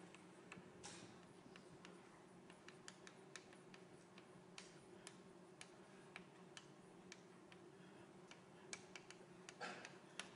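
Faint, irregular clicks and taps of chalk on a blackboard over a low, steady room hum; near silence overall.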